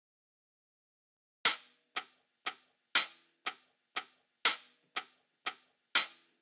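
The opening of a recorded song: silence for about a second and a half, then sharp rhythmic ticks, two a second, every third one louder, like a clock or metronome count-in before the band enters.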